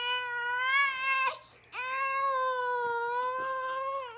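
A baby giving two long, drawn-out wailing cries at a fairly steady pitch. There is a short break between them a little over a second in.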